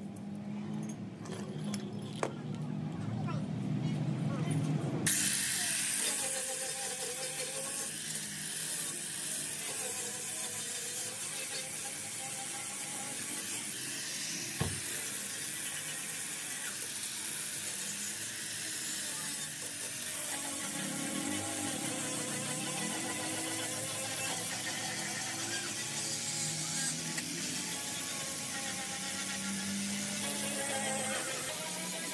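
Angle grinder cutting and grinding the steel body panel of a car, a steady high hiss that starts suddenly about five seconds in.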